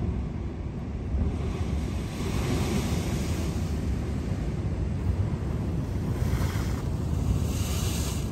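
Ocean surf washing over a rock shelf, with two surges of breaking water, the stronger one near the end. Wind rumbles steadily on the microphone underneath.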